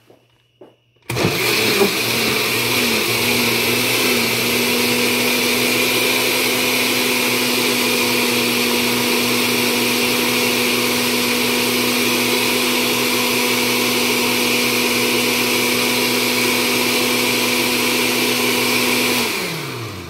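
Oster blender switched on about a second in, blending wheat and milk into a shake. Its motor pitch wavers for the first few seconds, then runs steadily and winds down with a falling pitch just before the end.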